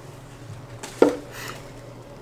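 A quiet pause with a low steady room hum and faint breathy noise, broken about a second in by one short, sharp sound.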